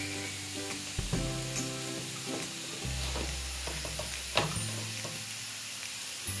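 Grated radish frying in oil in a pan, with a steady sizzle. Background music of held notes, changing every second or two, plays over it, with a couple of faint clicks.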